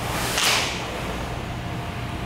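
A short, sharp swish of karate uniforms as a group of students moves their arms together in unison at the start of a kata, about half a second in, over a steady low hum.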